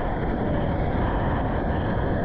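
Steady rush of a breaking ocean wave and water sloshing around a camera held at the water's surface.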